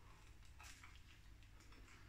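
Near silence: room tone with a few faint mouth clicks from biting and chewing a mouthful of chilli dog.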